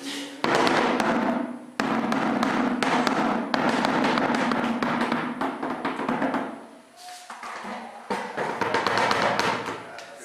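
Plastic bucket drum played with two sticks in a quick, dense rhythm that stops about six and a half seconds in, followed by a few more scattered beats near the end.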